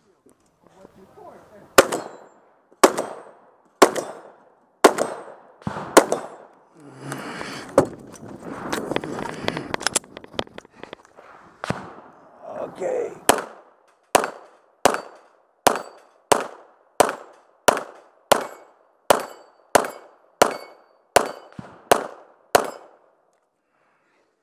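Gunfire: about five shots from a Remington 1100 semi-automatic shotgun, roughly one a second. After a few seconds of lower, scuffling noise comes a long string of rapid, evenly spaced 9mm shots from a Glock 34 pistol, about two a second.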